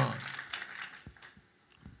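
A man's speaking voice ends a word at the start, and its echo in the room fades away over about a second, leaving a short, nearly silent pause.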